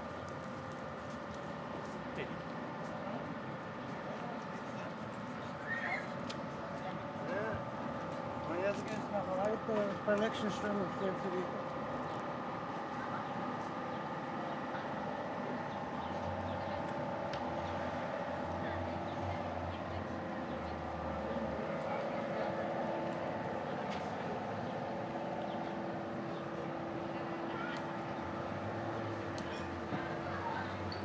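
Town street ambience: passersby talking, loudest a few seconds in, over a steady hum and background noise.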